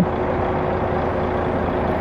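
A lorry engine idling steadily, a low even rumble with a faint held whine over it.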